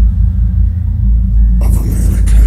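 A loud, steady deep bass drone through a concert sound system fills a dark venue before the set begins. Near the end, crowd shouting and cheering rises over it.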